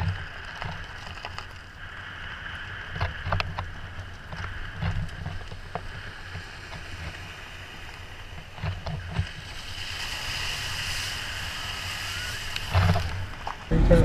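Car rolling slowly down a gravel road, heard from outside the vehicle: low rumbles from the suspension and scattered clicks of stones under the tyres. About ten seconds in a rushing hiss builds as the tyres reach the shallow water flowing over the road.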